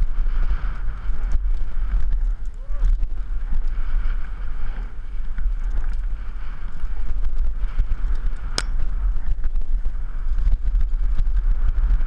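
Wind buffeting a helmet-mounted camera microphone over the rumble and rattle of a downhill mountain bike running fast over a rough dry dirt trail. A single sharp clack about eight and a half seconds in.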